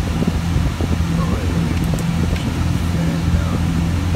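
Lamborghini Aventador's V12 engine idling, heard from inside the cabin as a steady low hum, with the air-conditioning fan blowing.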